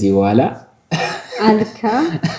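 Conversational speech in Amharic, with a brief pause a little over half a second in.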